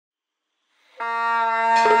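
Music: after a second of silence, a reedy wind-instrument funeral horn tune begins on a long held note. Just before the end, a quick repeated note joins in.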